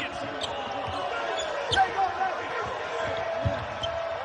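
Basketball dribbled on a hardwood court, with scattered sharp bounces, short sneaker squeaks and players' voices on the floor.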